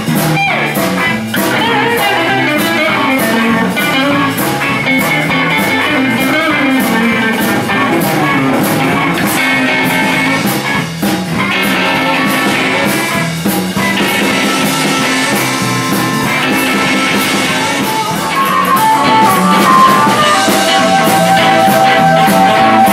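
A live blues band jamming, with electric guitars over a steady drum beat. Near the end the music gets louder and a long held note comes in from the saxophone and harmonica.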